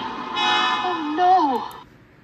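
The 1959 animated film's soundtrack played through laptop speakers: a loud, held dramatic sound whose pitch wavers and then slides down. It cuts off just before the end, leaving faint room noise.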